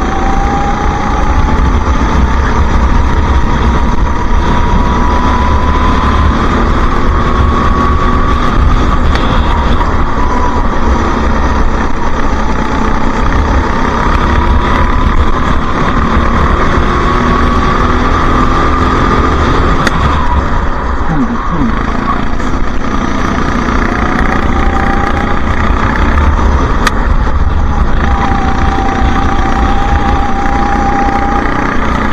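Go-kart engine running hard at racing speed, heard from onboard, its pitch rising and falling with the throttle over a heavy low rumble.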